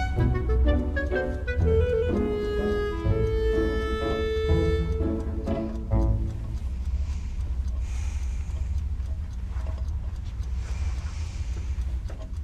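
Film score of bowed strings playing held notes, fading out about six seconds in, over a steady low rumble that carries on after the music stops.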